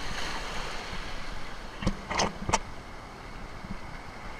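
Shallow ocean surf washing and fizzing around a camera held down in the whitewater, with a few short sharp splashes about two seconds in.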